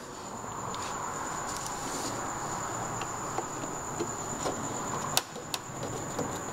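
Hand screwdriver driving small screws into plastic scooter body trim: a few faint ticks, then two sharp clicks near the end, over a steady background hiss with a thin high-pitched whine.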